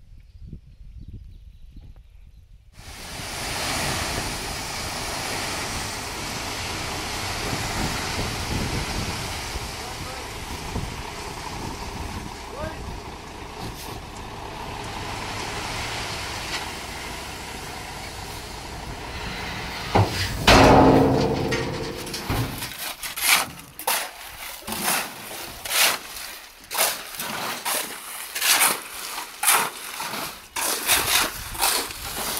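Dump truck tipping a load of crushed gravel, a steady rushing noise of the engine and pouring stone, with a brief loud burst about twenty seconds in. Then shovels scrape and strike, roughly twice a second, as concrete is mixed by hand on the ground.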